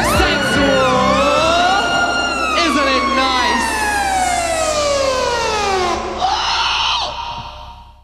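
End of a live synth-pop song: the drum-machine beat stops and a siren-like synthesizer tone slides slowly down in pitch over several seconds. A short burst of hiss follows about six seconds in, then the sound fades out.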